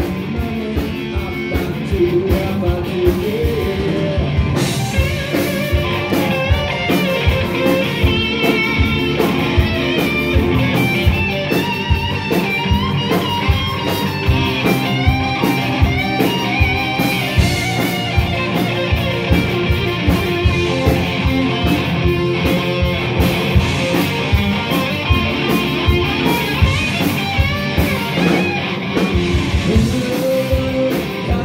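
Live rock band playing at a steady beat: electric guitar through a Marshall amplifier with drum kit and keyboards, a wavering lead line running high over the band for much of the middle.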